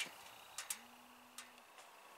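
Near quiet background with a few faint ticks and a brief, faint low hum about a second in.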